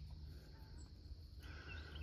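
Quiet outdoor background: a low steady hum, with a few faint bird chirps of short gliding notes coming in near the end.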